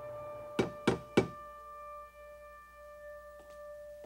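Three sharp knocks on a door, about a third of a second apart, over a held chord of background music that fades away.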